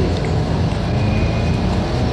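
Motor vehicle engine running in street traffic: a steady low rumble.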